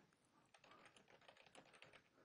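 Faint computer keyboard typing: a quick run of keystrokes, roughly ten a second, starting about half a second in.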